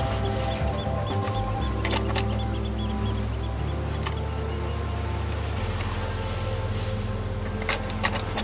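Background music with held low notes that change in steps every second or two, with a few short clicks about two seconds in and again near the end.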